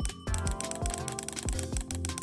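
Keystrokes on a laptop keyboard, each answered by the clack of a mini solenoid in a typewriter-sound add-on striking to imitate a typebar, in a quick, even run of clacks over background music.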